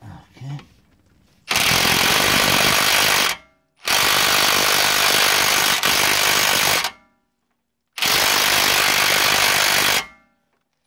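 A cordless impact wrench hammering on a rusted, seized suspension-arm bolt in three bursts of about two to three seconds each, with short pauses between them.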